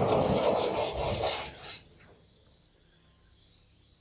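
Blackboard eraser rubbing across a chalkboard in a run of quick strokes, stopping about two seconds in.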